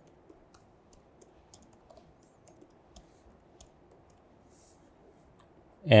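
Faint, irregular keystroke clicks from a Mac laptop keyboard as an email address is typed out, thinning out over the last couple of seconds.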